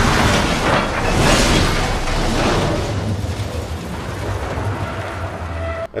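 Film sound effects of a small spaceship crash-landing on a snowy, stormy planet: a long, loud, noisy rumble with a low drone underneath, cut off suddenly near the end.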